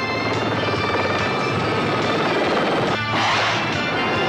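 Small RC helicopter's rotor whirring under background music, with a sudden harsh burst of noise about three seconds in as the helicopter comes down onto the floor.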